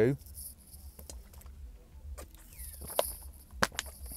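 Scattered small clicks and crackles of a plastic drink bottle being handled and its cap twisted open, the sharpest clicks about three seconds in, over a faint steady low hum.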